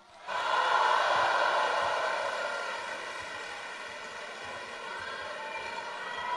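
Theatre audience applauding and cheering, rising quickly at the start, then easing to a steady level.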